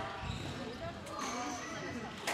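Squash rally: dull thuds of the ball off the racket and court walls, with players' footsteps on the wooden court floor.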